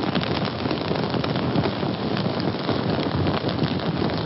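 Fire sound effect: a steady rushing noise of burning flames, thick with small crackles.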